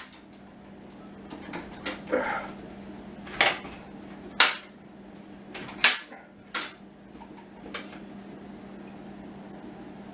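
Lid of a stainless steel pot still being handled and taken off with oven mitts: a handful of sharp metallic clanks and knocks, the loudest four spread through the middle of the stretch. A faint steady hum runs underneath.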